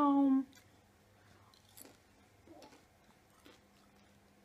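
A short held voice sound with a slowly falling pitch right at the start, then quiet room tone with a few faint soft clicks from someone chewing a dried cinnamon apple chip.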